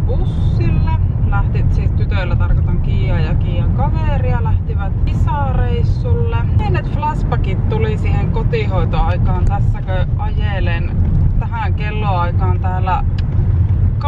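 A woman talking over the steady low rumble of road and engine noise inside a moving car's cabin.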